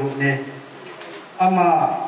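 A man speaking into a microphone through a PA system, pausing for about a second in the middle before going on.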